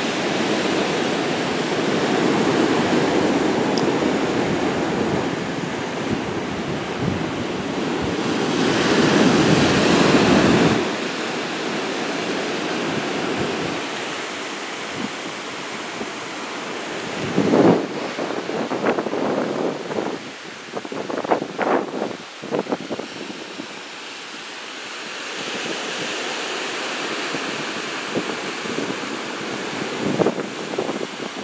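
Ocean surf washing in onto the beach below, with wind rushing over the microphone. The noise swells to its loudest around nine to eleven seconds in, then drops back, and a few short bumps come in the second half.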